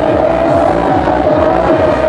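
Full-on psytrance played live and loud: a fast rolling bassline of quick repeating low notes under steady held synth tones.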